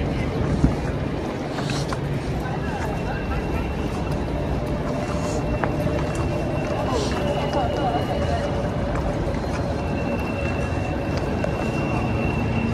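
Busy city street ambience heard while walking along a sidewalk: a steady hum of traffic with passersby's voices mixed in.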